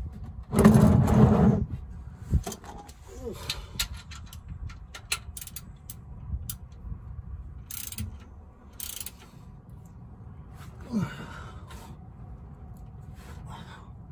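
Handling noises from an oil change under a truck. About half a second in, a loud scrape lasts about a second, the plastic drain pan being slid over concrete. Then come scattered clicks and knocks of a wrench at the oil pan's drain plug as the plug is put back in, and a brief vocal sound near the end.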